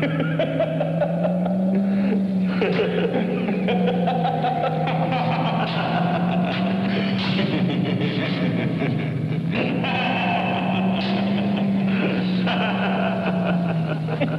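Men laughing and cackling at length, over a steady low hum that wavers slowly in pitch.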